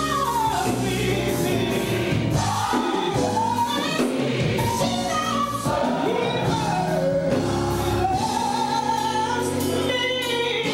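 Gospel choir singing, with long held notes that slide up and down in pitch.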